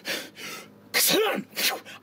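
A man's mouth sound effect: heavy breathing, then about a second in a sharp burst of breath with a short rising-and-falling voiced cry, imitating a wizard vanishing by teleport.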